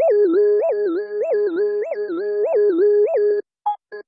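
Angular Momentum Unifyer 3 software synthesizer playing its 'Glassy Lead' preset: a sustained, bright lead note that slides up in pitch and back down about every 0.6 s. Near the end the held note cuts off and gives way to short, clipped notes.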